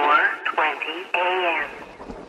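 A person's voice speaking, with little above the middle of the range, as through a small speaker. The voice stops about one and a half seconds in, leaving a faint low hum.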